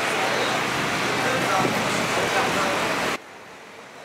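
Busy outdoor street ambience: steady traffic noise mixed with people's voices. It cuts off abruptly about three seconds in, giving way to a much quieter background.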